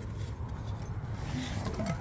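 A low, steady background rumble with no distinct event.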